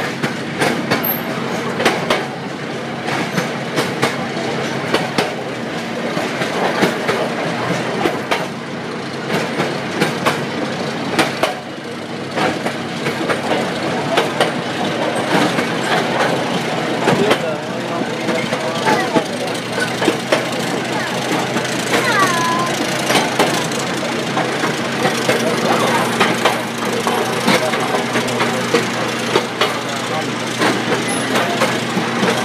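Miniature park train running on its narrow-gauge track, heard from aboard: wheels clicking over the rail joints over a steady engine hum.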